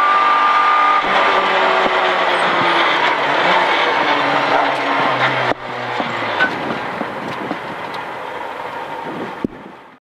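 Citroën Saxo A6 rally car's engine heard from inside the cabin. It is held at high revs at first, then its pitch falls away over the next few seconds as the car slows after crossing the stage finish. The level drops suddenly about five and a half seconds in, and the engine runs lower and rougher until the sound fades out at the very end.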